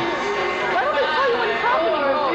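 Indistinct chatter: several voices talking over one another, none of it clear words.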